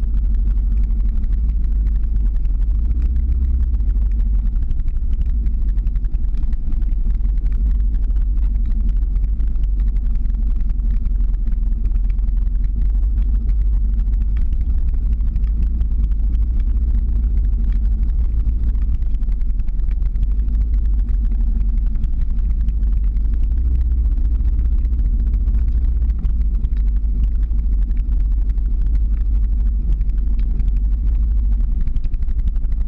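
Motor vehicle driving slowly uphill: a steady low rumble of engine and road noise with a faint hum.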